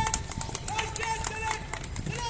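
Scattered hand clapping from a crowd, with short high pitched notes sounding over it between two long held notes.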